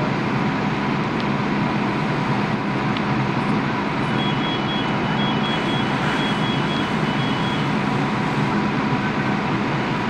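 Fire engine running steadily close by: a loud, even engine-and-pump noise with a low hum. From about four seconds in, a faint high beeping repeats in short pulses for about three and a half seconds.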